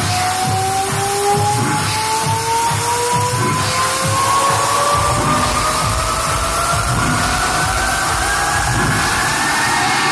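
Hard techno played loud over a club sound system: a steady fast kick drum under two synth tones that climb slowly in pitch as a build-up. Deep bass fills in about halfway, and the rising tones end near the end.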